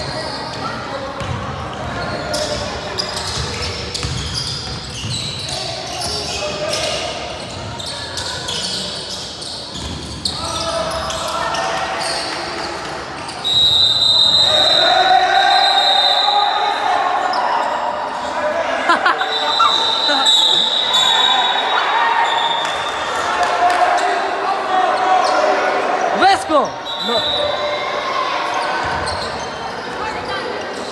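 Indoor basketball game echoing in a gym hall: ball bouncing, players moving and voices. About thirteen seconds in a referee's whistle blows and play stops, followed by several more long whistle blasts and raised voices.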